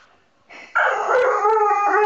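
A Bull Terrier giving a long, drawn-out howling 'talking' vocalization, starting about three-quarters of a second in. The pitch wavers slightly as it goes.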